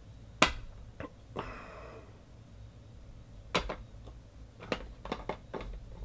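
Sharp clicks and light knocks from a small black card box and a stack of trading cards being handled and set down on an aluminium case, the loudest click about half a second in, with a short rustle near one and a half seconds and a quick run of clicks near the end.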